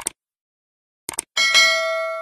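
Subscribe-button animation sound effects: a short click at the start, a quick double click about a second in, then a bright notification-bell chime that rings out and slowly fades.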